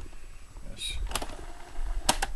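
Portable cassette boombox being stopped and cued by hand: a sharp mechanical click from the tape transport keys a little past a second in, over low handling rumble.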